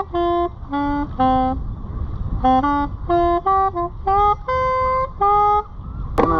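A solo melody instrument playing a tune in short, separate notes of steady pitch, with small gaps between them, over a low steady rumble.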